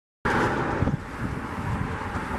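Wind buffeting the microphone outdoors, louder for the first second and then settling to a lower rumble.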